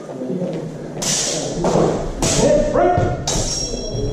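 Steel HEMA training swords striking in an exchange: three sharp hits about a second apart, the last with a high metallic ring, ringing in a large hall.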